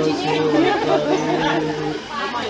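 People talking, several voices at once; the plucked-string music has largely given way to chatter.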